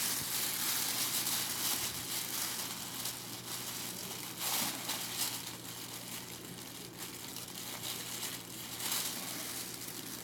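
Thin clear plastic sheet crinkling and rustling as it is handled and wrapped around the neck, with brief louder crinkles about halfway through and near the end.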